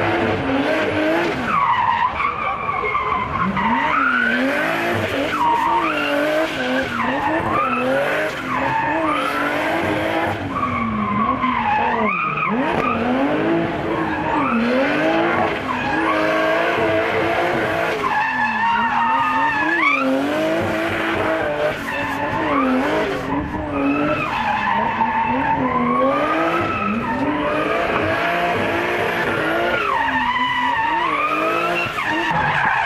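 Drift car sliding sideways with its engine revving up and down over and over as the throttle is worked, and its tyres squealing and skidding on the tarmac.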